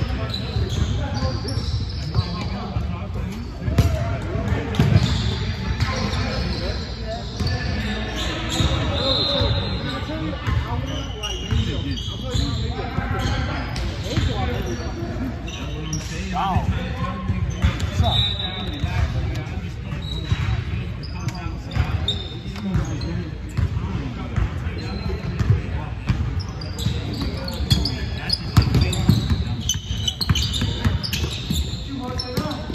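Basketball game on a hardwood gym floor: the ball bouncing repeatedly, short high squeaks, and indistinct voices of players calling out, all echoing in the large hall.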